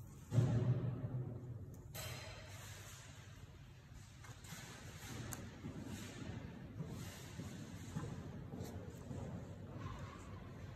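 Pages of a handmade zine, including translucent tracing-paper leaves, being turned and handled by hand. There is a dull thump just after the start as a leaf drops over, a sharper rustle about two seconds in, then soft paper rustling with small ticks.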